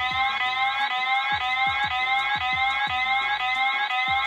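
Clyde anti-theft alarm sounding from a MacBook's speakers, set off by closing the lid. It starts suddenly and is loud: short electronic rising tones repeated over and over.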